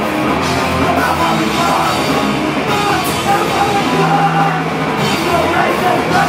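A live heavy rock band playing loud, with electric guitars, bass and a drum kit all going at once.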